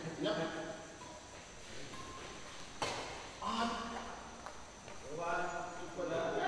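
Men's voices calling out and talking in short bursts in a badminton hall. A single sharp smack comes near the middle.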